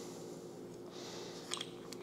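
Faint handling of a metal measuring spoon and a small salt container: a soft scraping hiss about a second in and a light click near the end, over a steady low room hum.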